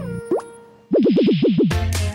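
Cartoon sound effects over music: the music dies away, a short rising plop sounds, then a wobbling tone swoops up and down five times, and new upbeat music with a heavy beat kicks in near the end.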